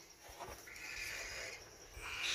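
A faint, raspy call from a young yellow ringneck parakeet chick while it is handled, lasting about a second.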